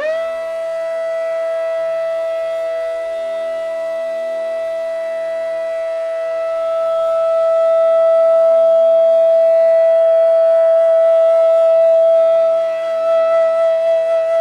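Bansuri (Indian classical bamboo flute) sliding up into one long held note and sustaining it, swelling louder about halfway through before easing back, over a steady drone.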